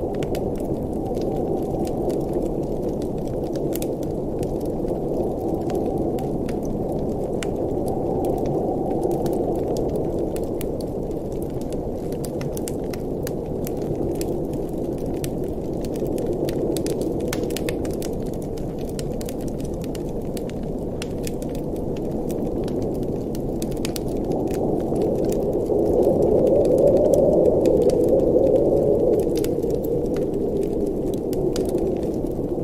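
Wood fire burning in a fireplace, crackling with frequent sharp pops and snaps over a steady low rush that swells a little near the end.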